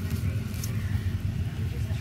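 A steady low rumble, with light rustling of packaging as a hand reaches into a box lined with bubble wrap.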